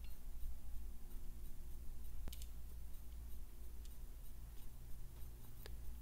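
A few faint clicks of a digital caliper's steel jaws being worked across a camshaft lobe to find its peak, over a steady low hum.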